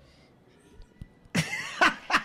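A short near-quiet pause, then a man bursts out in a loud laugh about a second and a half in.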